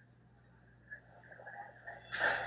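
Near silence: faint track ambience with a steady low hum, and faint scattered sounds in the second half.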